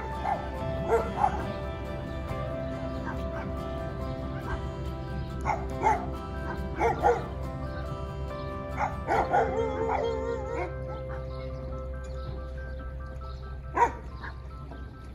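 Background music with steady held tones. Over it, a dog barks and yips in short clusters: near the start, around the middle, and once more, loudest, just before the end.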